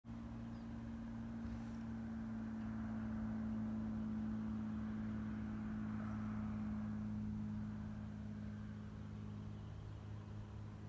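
Beech Bonanza's 300 HP piston engine and propeller droning steadily as the plane comes in to land, growing louder over the first few seconds and fading after about eight seconds.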